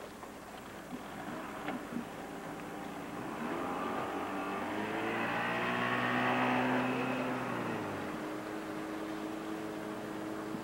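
Motorboat engine running at speed while towing a water skier. It grows louder from about a third of the way in, is loudest about two-thirds through, then eases off with its deepest tone dropping out.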